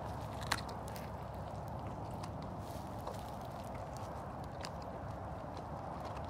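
A lion chewing and licking at a food scrap: small scattered clicks and crunches over a steady low outdoor rumble, with one sharper click about half a second in.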